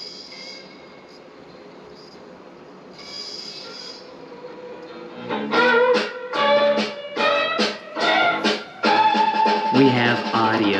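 A vinyl record playing on a vintage Garrard RC121/4D record changer: quiet hiss for the first few seconds, then music starts about five seconds in and plays loudly.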